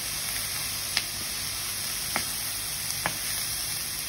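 Diced vegetables and chickpeas sizzling in a hot frying pan as a wooden spoon stirs them: a steady hiss with three light clicks of the spoon against the pan.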